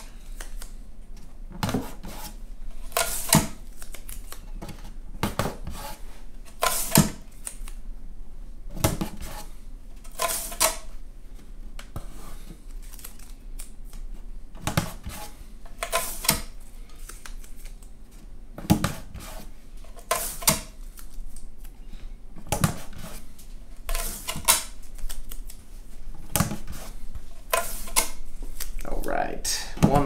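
Strips of binding tape pulled off the roll and torn, one every second or two, then pressed down to hold wooden binding in its channel on an acoustic guitar's back.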